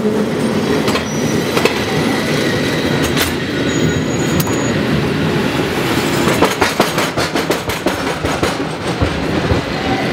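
San Francisco cable car running on its rails, a steady loud rumble and rattle. From about six seconds in it clatters in a quick run of sharp clacks as it rolls across an intersection.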